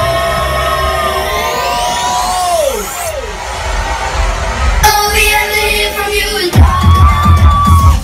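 Loud electronic dance music from a DJ set: held synth notes and a rising sweep build up, a short muffled break follows, then a heavy bass beat drops in about six and a half seconds in.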